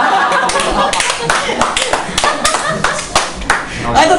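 A small group of people applauding, with irregular claps and voices over them.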